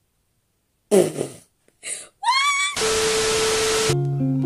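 A loud, short fart-like blast about a second in, then a brief noisy burst and a rising squeal of laughter. It ends in about a second of loud, even hiss carrying a steady tone, which cuts off suddenly.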